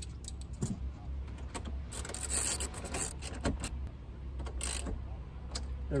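Ratchet wrench with a 10 mm socket clicking as it tightens the nut on a car battery's positive terminal: scattered single clicks, then a run of rapid clicking about two to three seconds in and a shorter run near the five-second mark.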